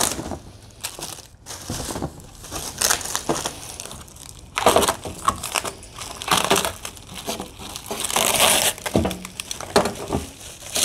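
Plastic wrapping and cardboard packing rustling and crinkling in irregular bursts as parts are unpacked from a box, loudest about halfway through and again near the end.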